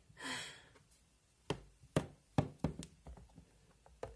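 A short breathy sigh, then a quick run of about half a dozen sharp taps and knocks over a second and a half, with fainter ticks after them: hard plastic pony figures being walked and set down on a plastic toy castle playset.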